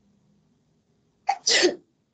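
Near silence, then a single short vocal burst from a person about one and a half seconds in.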